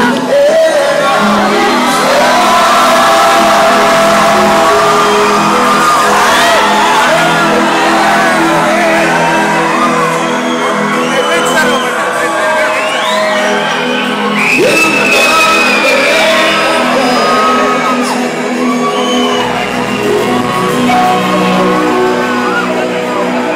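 Live band playing (electric guitars, keyboard, drums) with singing, while voices in the audience close by sing along, shout and whoop over it.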